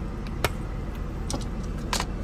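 Steady low rumble with three sharp clicks from the plastic multimeter case and its removed back cover being handled.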